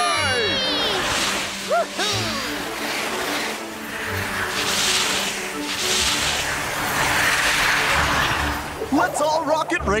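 Cartoon whoosh sound effects of small racers flying past, coming in repeated swells over steady background music, with a few short squeaky cartoon voice chirps.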